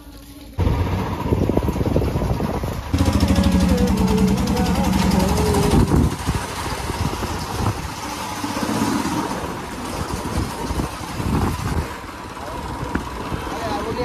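Royal Enfield Bullet single-cylinder motorcycle engine starting suddenly about half a second in and running. From about three seconds in the bike is being ridden, its engine running under way with rushing air noise.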